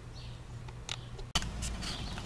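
A few faint, short clicks and rustles of handling. About two-thirds of the way through, the background switches abruptly to a steady low hum.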